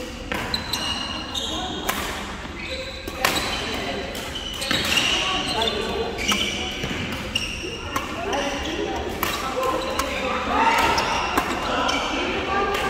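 Badminton rally on a wooden indoor court: irregular sharp racket hits on the shuttlecock and short high squeaks of shoes on the floor, over voices chattering in a reverberant hall.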